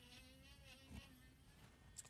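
A handheld rotary carving tool running, heard only faintly as a thin, steady whine.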